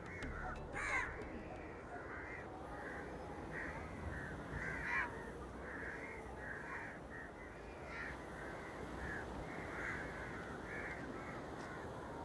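Crows cawing over and over, several short calls a second, with a louder caw about a second in and another near five seconds.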